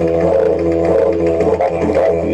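Didgeridoo playing a continuous low drone, with overtones above it that shift in pattern throughout.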